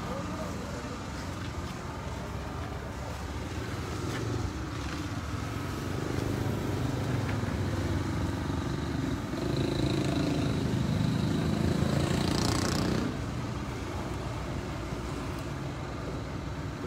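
A motor vehicle engine running close by, growing louder over several seconds with a thin high whine on top, then dropping away suddenly about thirteen seconds in.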